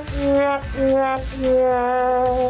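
Music: a horn-like wind instrument holds three long notes in a row, each a little lower than the one before.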